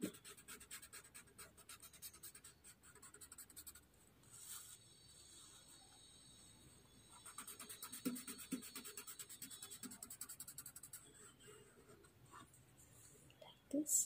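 Blending stump rubbing graphite into a paper drawing tile in quick back-and-forth strokes: faint, fine scratching of paper on paper as the pencil shading is smoothed out.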